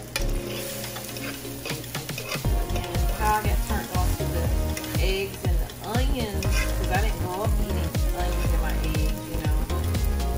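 Scrambled eggs and sliced jalapeños sizzling in a hot nonstick skillet while a fork stirs and scrapes them around the pan. Background music with a bass beat plays over it, stronger from about two seconds in.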